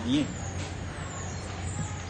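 A man's voice ends a word, then background vehicle traffic: a steady low hum with a faint high whine that falls and rises.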